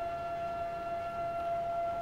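Steady electrical whine from the Lambda 1050 spectrophotometer with its TAMS accessory: one held tone with fainter overtones above it, unchanging throughout.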